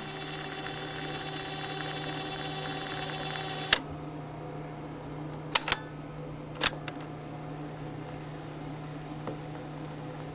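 Marantz PMD-221 portable cassette recorder's tape transport running with a steady motor whine, cut off by a key click a little under four seconds in. A few more clicks of its transport keys follow about two and three seconds later.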